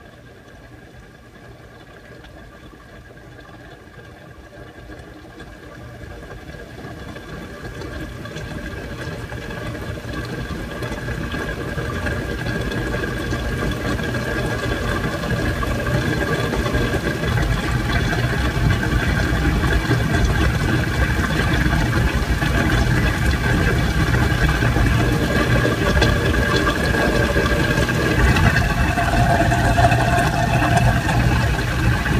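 Kitchen sink garbage disposal running: a steady motor hum and whir that grows louder over the first fifteen seconds or so, then holds.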